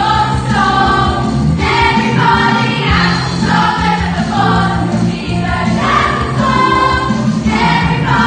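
A chorus, mostly women's voices, sings an upbeat musical-theatre number live in a theatre, accompanied by an electric keyboard playing steady bass notes.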